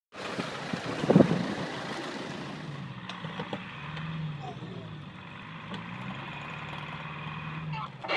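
Land Rover Discovery's turbodiesel engine revving up and down under load as the four-wheel-drive vehicle tries to drive out of deep mud where it is stuck against a tree. A single loud thump comes about a second in.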